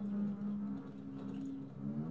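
Experimental improvised music from a trio of electric harp, voice and double bass: two low tones held together with a slight buzz, the pitch sliding upward near the end.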